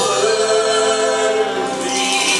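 A man singing a gospel hymn into a microphone, holding one long steady note that breaks off near the end.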